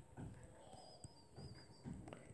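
Near silence: faint room tone with a few soft low knocks and a faint, wavering high bird chirp about halfway through.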